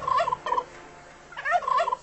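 A turkey gobbling twice, each call a short rapid warble, the first at the very start and the second in the latter half.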